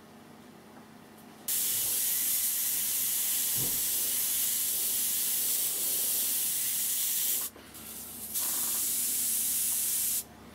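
Airbrush spraying, a steady hiss of air and paint that starts about a second and a half in, drops off briefly about three quarters of the way through, then starts again. The brush has a partial paint blockage in it.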